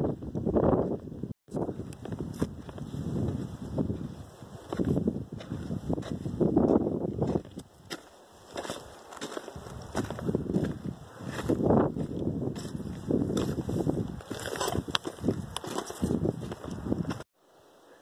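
Footsteps of a hiker crunching along a gravelly granite trail, uneven and irregular, mixed with wind rumbling on the phone's microphone. The sound cuts out briefly about a second and a half in and again near the end.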